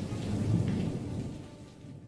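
A sound effect of low rumble with hiss, slowly fading out.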